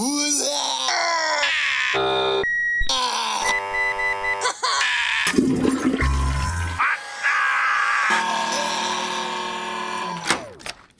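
A string of electronic smart-device sounds in quick succession: beeps and chimes, a held high tone, and warbling synthetic voice-like glides, with a deep low sound about six seconds in.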